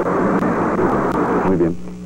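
Studio audience laughing, a dense steady wash of many voices that dies away in the last half second.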